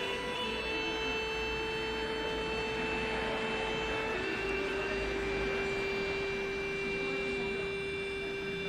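Background music of long held notes, the chord changing about halfway through.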